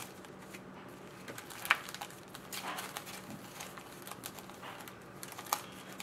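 Foil-wrapped hockey card packs crinkling and rustling as they are shuffled and sorted between the hands, with a few sharp clicks, the loudest a little under two seconds in and another near the end.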